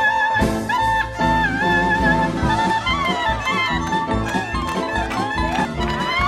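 Lively dance music: an ornamented, wavering melody line over a steady driving beat.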